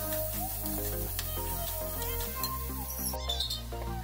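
Instrumental background music: held melody notes over low bass notes that change every second or so.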